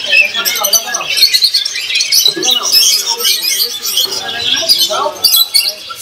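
A flock of caged budgerigars chirping and chattering together: a dense, continuous mass of short high chirps, with voices mixed in underneath.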